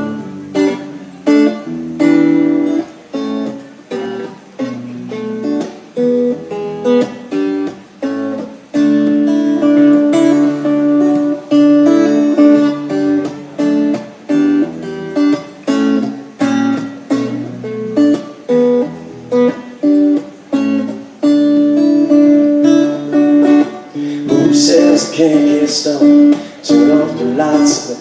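A Taylor 214 acoustic guitar is strummed solo in a steady, rhythmic chord pattern as a song intro. A man's singing voice comes in near the end.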